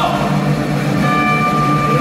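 Chinese traditional orchestra holding a sustained chord, with steady higher notes entering about a second in.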